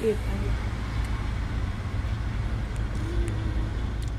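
Steady low road-and-engine rumble heard from inside a car being driven.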